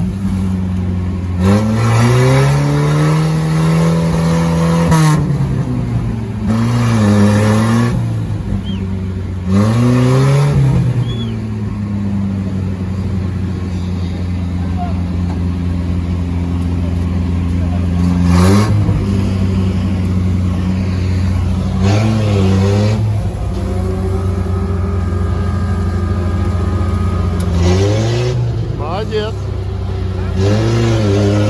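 UAZ off-roader's engine revving hard as the vehicle sits bogged in deep mud, the pitch climbing and falling back several times, with a longer held rev in the middle.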